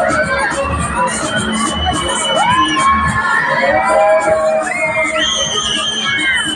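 Riders on a fairground thrill ride screaming and shouting together as its arms lift them up, with several high, drawn-out screams overlapping, over loud fairground music.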